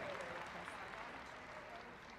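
Audience applause from a large hall, dying away steadily.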